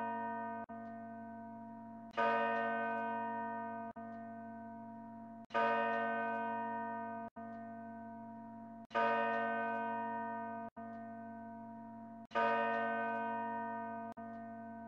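A deep bell tolling in a soundtrack, struck four times about three and a half seconds apart, each strike ringing out and slowly fading over a low steady drone.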